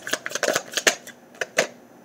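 A deck of tarot cards being shuffled by hand: a quick, irregular run of light card flicks and snaps that thins out about a second and a half in.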